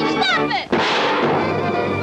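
Cartoon orchestral score on an old soundtrack, with a falling glide that breaks off about two-thirds of a second in and is followed by a sudden loud bang-like burst that fades away over about a second while the music goes on.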